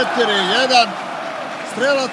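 A man's sports commentary voice, with a steady haze of stadium crowd noise beneath it that is heard most clearly in the gap in the middle.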